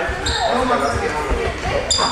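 Footfalls thudding on a sports-hall floor as boxers move in sparring, with short high squeaks about a quarter second in and again near the end, and voices in the echoing hall.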